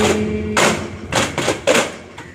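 Voices holding a sung note that stops about half a second in, followed by a handful of loud hand strikes on duff frame drums, the closing beats of the duff routine.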